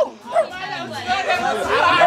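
Several people talking at once, overlapping chatter of a small group.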